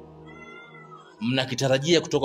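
A short pause in a man's speech, filled by faint steady low background tones and a brief, faint high-pitched call whose pitch sags slightly. His voice resumes a little after a second in.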